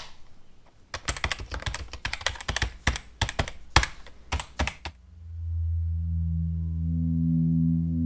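A rapid, irregular run of sharp clicks, like keyboard typing, for about four seconds, then a low, steady humming drone with several held tones that swells in about five seconds in.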